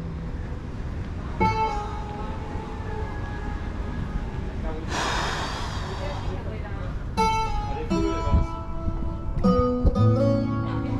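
Low rumble of wind on the microphone, with background music of plucked guitar and indistinct voices heard in snatches. A hiss of about a second comes midway.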